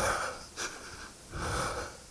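A person breathing heavily in and out right at a helmet-mounted microphone, about three rhythmic breaths.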